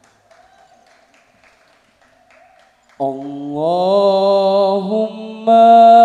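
A near-quiet pause, then about three seconds in a solo male voice begins an unaccompanied sholawat chant. It is one long melismatic line that slides up in pitch, holds, and steps higher near the end, getting louder.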